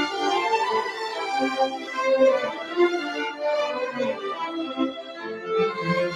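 String chamber orchestra playing: violins carry a busy line of quickly changing notes over cellos and double bass.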